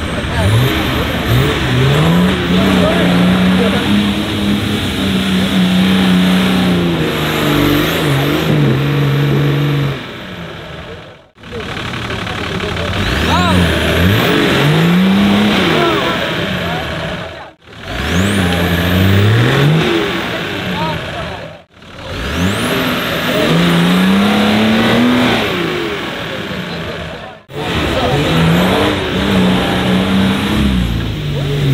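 Nissan Patrol 4x4's engine revving up and down under load as it climbs through deep muddy ruts, with voices of onlookers underneath. The sound breaks off sharply four times.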